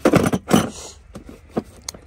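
Hand tools clattering and scraping against each other and the plastic of a tool box as they are handled, loudest in two bursts in the first half second, followed by a few light clicks.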